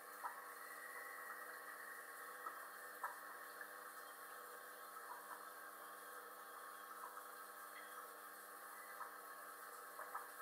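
Faint steady hum of a running aquarium filter and air bubbling, with a few soft irregular pops.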